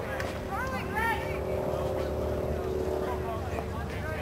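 Young voices shouting and calling out across an outdoor sports field, loudest about a second in, over a steady low hum and rumble.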